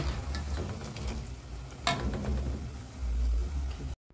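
Banana-and-cassava fritters deep-frying in hot oil, a steady sizzle, with a wire skimmer stirring them in the aluminium pot.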